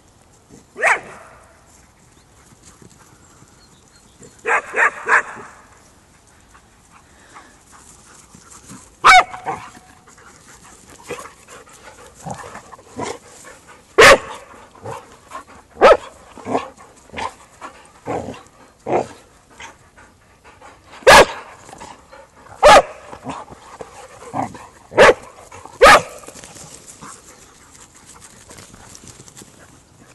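Dogs barking in short, sharp bursts during rough chasing and wrestling play, with a quick run of three barks about four seconds in and many more single barks spread through the rest.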